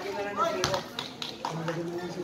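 Spectators' voices and children's chatter around an outdoor basketball court, with three or four sharp knocks from the play on the court.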